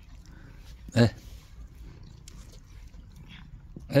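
A man's voice giving two short, low 'eh' calls, one about a second in and one at the end, over a faint steady background.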